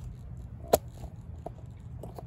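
A single sharp click a little under a second in, followed by a couple of faint ticks, over a low steady rumble.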